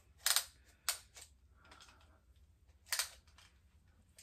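A few short clicks and rustles from a retractable body tape measure being handled, pulled out and wrapped around the upper arm.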